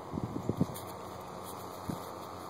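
Wind buffeting the microphone: a few short low thumps in the first second and one more near the end, over a steady faint rumble.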